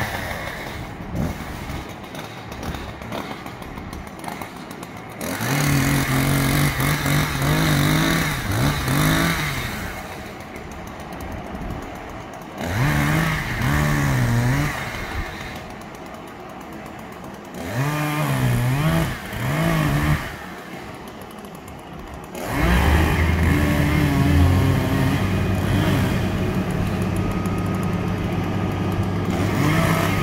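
A chainsaw revving up and down in several separate bursts as it cuts in the tree. From about three-quarters of the way through, the crane truck's engine runs steadily underneath, lower in pitch.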